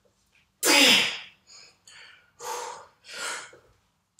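A man's loud strained grunt about half a second in, under a heavy barbell back squat, followed by several sharp, hissing, forceful breaths as he fights the weight.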